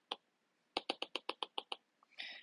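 Stylus tapping on a tablet screen, a single tap and then a quick run of about ten taps, roughly ten a second, as a dashed line is drawn stroke by stroke.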